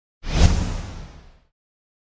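An outro whoosh sound effect with a low boom under it, starting suddenly a moment in and fading away over about a second.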